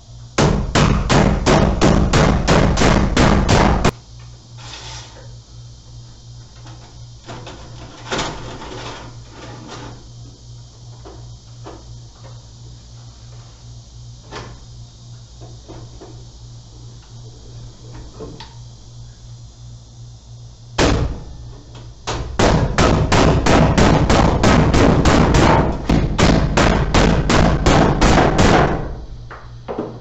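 Rapid hammer blows, several a second, nailing a recessed can light's hanger bars to the ceiling joists. There is a burst of about four seconds at the start and a longer one of about eight seconds near the end, with a few scattered taps and a low steady hum between.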